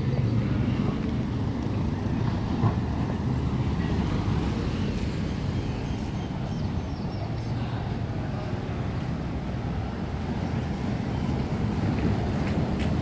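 Wind buffeting the microphone, heard as a steady low rumble, over faint street traffic.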